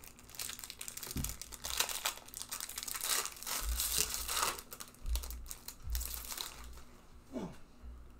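Foil booster-pack wrappers of Pokémon trading cards crinkling and tearing in irregular bursts as packs are opened by hand.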